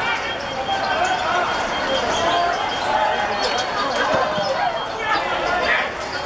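Players and onlookers shouting on a hard outdoor court, with several sharp knocks of a football being kicked and bouncing on the court surface.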